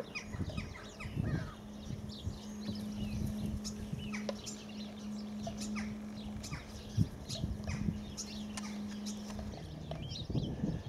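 Birds calling outdoors: many short, high chirps that drop in pitch, over a steady low hum that stops shortly before the end.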